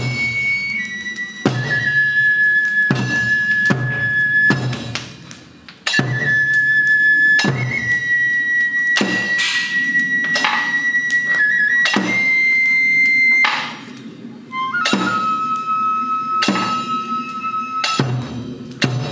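Tsugaru kagura music: a bamboo flute holding long, high notes that step between a few pitches over steady drum strikes. It drops off briefly twice.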